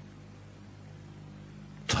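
Steady low hum with faint hiss, the background noise of the recording during a pause in the talk; a man's voice starts at the very end.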